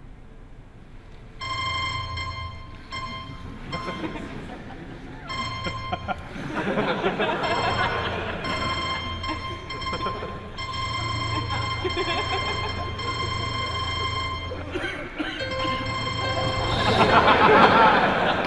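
Programmatically generated music: held chords that cut off and restart every few seconds. Audience laughter builds under it and swells near the end.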